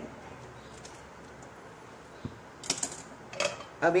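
Quiet kitchen room tone, then a few sharp clicks and taps of kitchen utensils against a steel cooking pot in the last second and a half.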